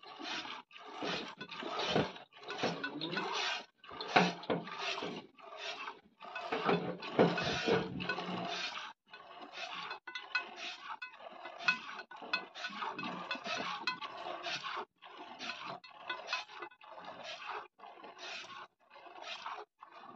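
A cow being hand-milked: milk squirting into a pail in a steady rhythm of about two squirts a second, the cow having let down her milk.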